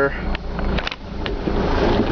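2003 Dodge Sprinter's five-cylinder turbodiesel idling steadily, heard from inside the cab, with a few light clicks.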